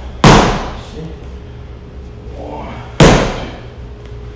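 Two punches landing on a handheld impact pad, about three seconds apart: each a sharp, loud smack that rings briefly in the hall.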